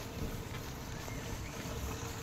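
Steady rain falling on wet pavement and road, with a low rumble of wind on the microphone.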